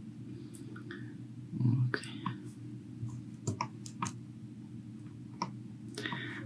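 A handful of short, sharp computer mouse clicks spaced irregularly over a few seconds, over a steady low hum.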